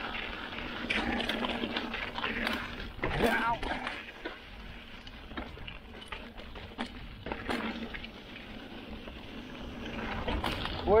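Mountain bike rolling down a rutted, rough dirt trail: tyre noise over the dirt with frequent rattles and knocks from the bike, and wind on the microphone. A brief vocal sound from the rider comes about three seconds in.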